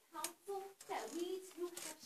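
Speech only: a woman speaking lines of a stage play.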